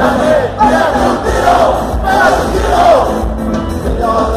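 Ska band playing live with a crowd singing and shouting along, loud and close to the microphone; massed voices slide downward in pitch near the start and again about three seconds in.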